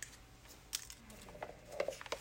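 Faint, scattered crinkling and clicking of an instant-tea stick packet being torn open and handled.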